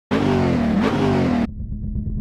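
Car engine revving sound effect: a loud, high engine note that dips briefly and climbs again, then cuts off suddenly about a second and a half in, leaving a low rumble.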